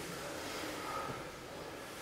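Quiet room tone: a faint, even hiss with no distinct sound event.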